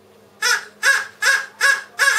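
Squawking caws voiced by a puppeteer for a toucan puppet, counting out the answer to three plus two: four short calls about 0.4 s apart, with a fifth, longer one starting at the end.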